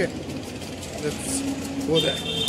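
Background hubbub of a busy railway station hall, with faint distant voices about halfway through.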